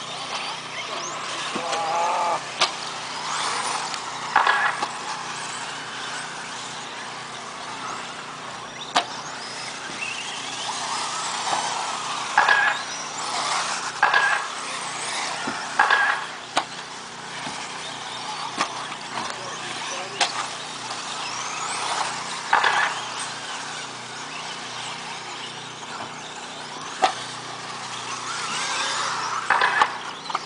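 Electric 1/10-scale 4WD RC buggies racing on a dirt track: motor and drivetrain whine rising and falling in pitch as the cars accelerate and slow, over the hiss of tyres on dirt. A few sharp clacks, as of a car landing or hitting the track boards, stand out.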